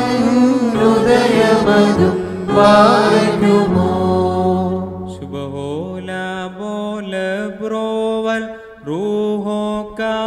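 Liturgical singing at the Holy Qurbana: several voices sing together over a sustained low drone for the first few seconds. Then a single voice chants alone on long, steady held notes, a solo reciting chant.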